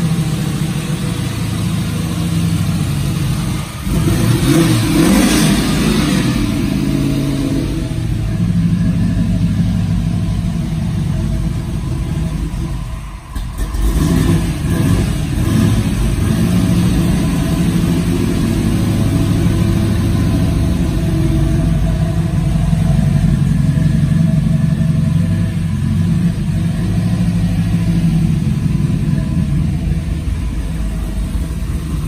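1968 Chevrolet Camaro SS's V8 engine running loudly at idle, with one rev about four seconds in. After a short dip around the middle it settles back to a steady idle.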